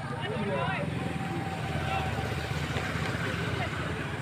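Scattered distant voices and calls over a steady low rumble.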